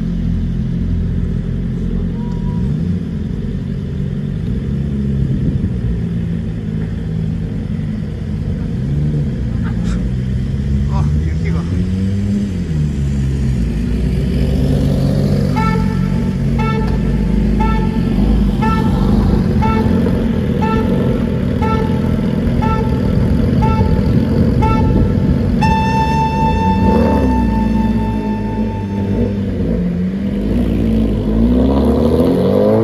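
Sport motorcycle engines idling, with a few blips of the throttle, while an electronic beeper counts down with short beeps about one and a half times a second. After some ten seconds the beeps give way to one long steady tone, the pit-exit countdown's signal that the exit is open.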